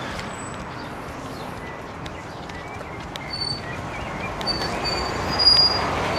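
A city bus pulling in to a stop, its engine and road noise growing louder as it draws close, with a few brief high squeals from its brakes in the second half.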